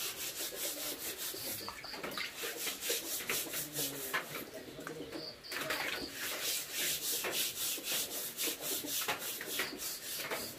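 Steel-wool scourer scrubbing a wet wooden chopping board in quick back-and-forth strokes, about four a second, with a brief pause about five seconds in.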